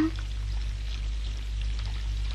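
Steady low hum under a faint even hiss: the noise floor of an old film soundtrack, with no distinct sound event.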